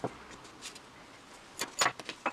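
Short clicks and knocks of plastic and metal drill parts being handled on cardboard: one sharp click at the start, then a quick cluster of three near the end, the loudest of them.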